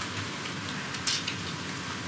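Steady hiss of background room noise picked up by a video-link microphone.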